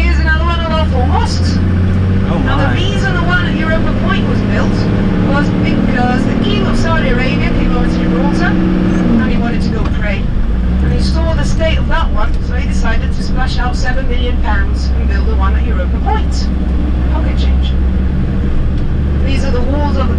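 Minibus engine and road noise heard from inside the cabin: a steady low rumble, with the engine note changing about nine to ten seconds in as the bus runs downhill. Indistinct voices talk over it.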